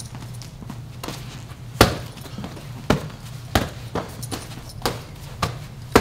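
Boxing gloves smacking against gloves as punches are thrown and parried, sharp slaps at a steady rhythm of about one a second, the loudest about two seconds in and at the end, over a low steady hum.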